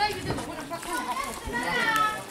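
Background voices: people talking, with children's voices among them and a higher-pitched voice near the end.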